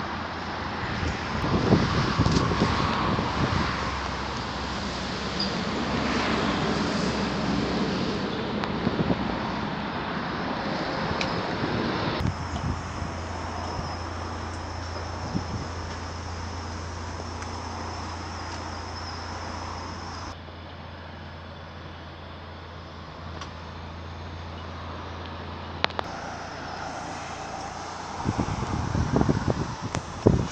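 Wind buffeting a handheld microphone over steady outdoor background noise, with scattered clicks and a cluster of knocks near the end.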